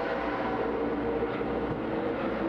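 Steady background noise of a racetrack garage area: a continuous mechanical drone with a couple of level hum tones running through it, with no single event standing out.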